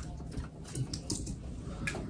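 Soft rustling of a bed's comforter and sheets as a person shifts on the bed and reaches behind the headboard, with a few light taps, the sharpest near the end.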